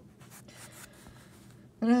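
Faint rubbing and scuffing of a hand moving across the tabletop beside a plastic action figure. A voice starts speaking near the end.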